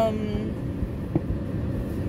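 Steady low rumble of a car idling, heard from inside the closed cabin, with one light click about a second in.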